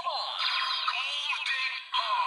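Kamen Rider Gaim CSM Sengoku Driver toy belt playing its electronic standby music with the gold Lock Seed locked in. The sound is thin and bass-less, with repeated sweeping pitch glides.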